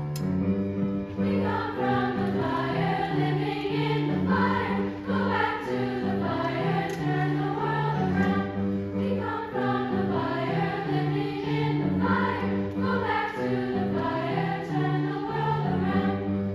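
Youth choir singing a feel-good Jamaican-style song over an accompaniment with a repeating bass line; the voices come in about a second in.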